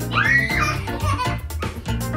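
A toddler's squealing giggle in the first second, over background music with a steady beat.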